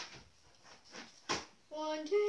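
A single sharp knock a little past halfway, then near the end a child's voice starts singing a steady held note.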